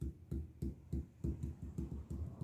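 Fingertips tapping or drumming softly on a table, a quick uneven run of about four dull taps a second.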